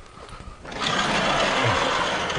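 A chalkboard being erased: a steady scrubbing, wiping sound that starts about two-thirds of a second in.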